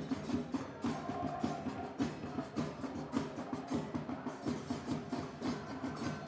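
Drums beating a quick, steady rhythm over a low sustained hum.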